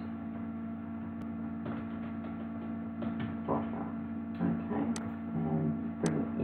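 Steady electrical mains hum on the recording, with a couple of sharp clicks and faint, brief murmurs of a voice.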